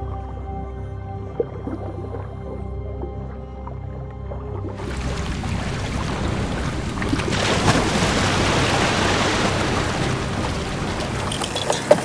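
Soft background music of held tones over a low drone. About five seconds in it cuts suddenly to loud splashing, churning surface water as sea lions leap and swim, growing louder toward the end.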